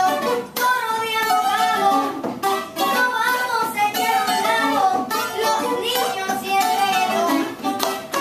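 Acoustic guitar being played live, with a voice singing over it.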